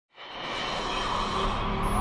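Electronic intro music opening with a noisy swell that fades in from silence and grows steadily louder, with a high tone starting to slide downward near the end.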